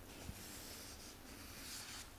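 Sheets of printer paper rustling as they are handled and lifted, in two short spells, faint.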